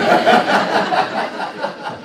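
Laughter in a run of quick, evenly spaced pulses, loud at first and fading over about two seconds.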